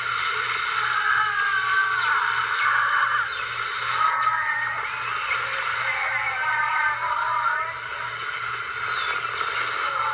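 Horror-film soundtrack heard through a TV speaker and re-recorded: wavering, warbling synthesizer-like tones with no dialogue, over a faint low pulsing.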